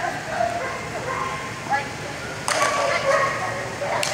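A dog barking and yipping, with a loud sudden bark about two and a half seconds in, and a person's voice calling alongside.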